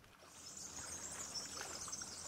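Quiet outdoor ambience: a steady high-pitched hiss or chirring sets in shortly after the start, with a few faint scrapes beneath it.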